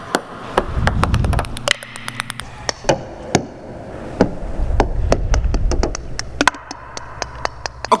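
Ping-pong balls bouncing on a plywood ramp and concrete floor: many light, sharp clicks, a quick run of them about a second in, then scattered single bounces. A low rumble sits under some of them.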